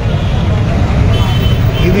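Steady low rumble of road traffic, with a thin high tone joining about a second in.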